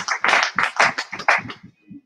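Audience applauding, the clapping thinning out and dying away about a second and a half in.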